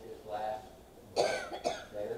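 A person coughs twice in quick succession, about half a second apart, starting a little over a second in; the coughs are louder than the man's speech around them.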